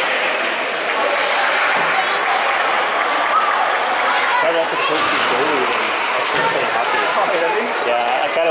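Indistinct chatter of many spectators talking at once in an ice rink, no single voice clear, at a steady level.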